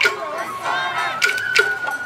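Sawara-bayashi festival music: sharp drum strikes and a bamboo flute holding one high note from a little past halfway. Over it come the performers' energetic shouts, mostly in the first half.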